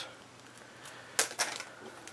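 Sheet of patterned paper being handled on a desk: a couple of sharp light taps a little over a second in, then a few fainter rustles and ticks.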